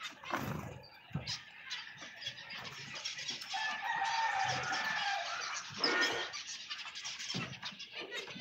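A flock of zebra finches chattering with many short, quick chirps. A longer, drawn-out call from another bird is held for about two seconds around the middle.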